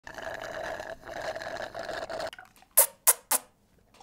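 A long slurp of an iced drink through a straw, steady with a brief break about a second in, stopping about two and a half seconds in; then three short sharp sounds in quick succession.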